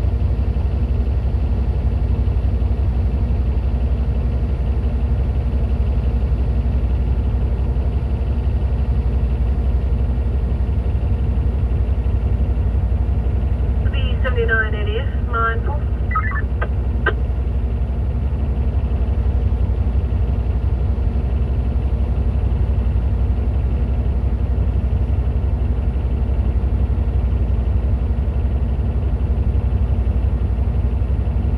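Cat D11T bulldozer's C32 V12 diesel engine idling steadily, a low rumble heard inside the cab. About halfway through, a short burst of voice comes over the two-way radio, ending in a couple of clicks.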